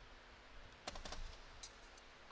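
A quick run of light clicks and taps about a second in, and one more click shortly after, over faint room tone.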